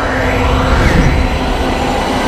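Animated sound effect of jet-boot thrust in flight: a steady rushing rumble.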